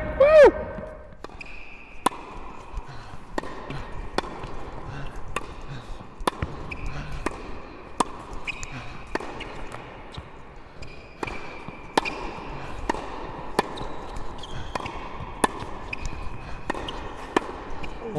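Tennis rally on an indoor hard court: the ball is struck by red Wilson Clash V2 racquets and bounces on the court, giving sharp pops every half second to a second.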